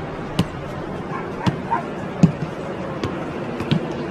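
A football being headed back and forth between two players: a short thud each time it hits a head, five in all, about one every three quarters of a second, over steady background noise.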